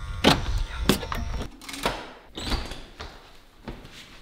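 A door being opened and gone through: a few sharp clicks and knocks from the lock, handle and latch, spread over the first two and a half seconds. A low rumble underneath drops away about a second and a half in.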